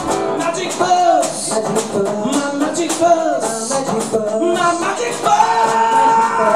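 Live band playing acoustic guitars, strummed, with a man singing long, wavering vocal lines over them.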